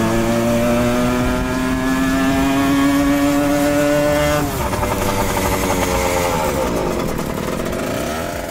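Engine of a custom Simson Schwalbe scooter being ridden up, its note climbing steadily, then dropping abruptly about halfway through and falling away further as it comes past close by.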